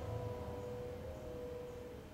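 Grand piano's held chord ringing on and dying away, its notes fading out over about a second and a half.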